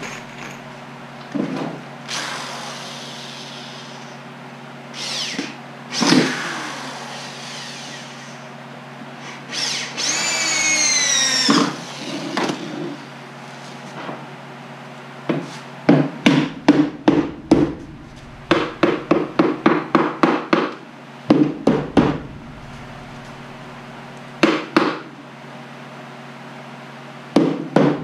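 Hammer blows on a wooden beehive deep box, coming in quick runs of sharp knocks at about four a second in the second half, driving a board that sits a little high into place. Earlier there are scattered scraping and knocking sounds and a short rising squeal.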